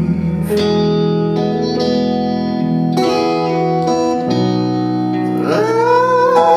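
Live band playing a slow passage of held keyboard and guitar chords that change every second or so. Near the end a voice comes in on a rising sung note.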